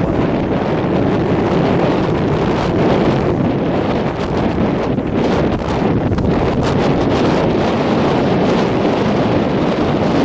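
Strong wind buffeting the camera's microphone: a loud, steady rumbling roar with harsher gusts about five to seven seconds in.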